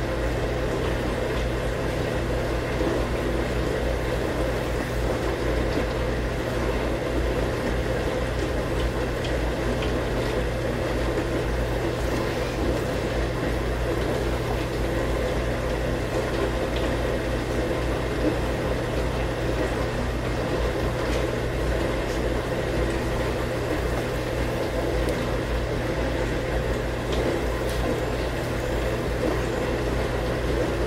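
Steady mechanical hum with a hiss, like a fan or appliance running, with a few faint knocks.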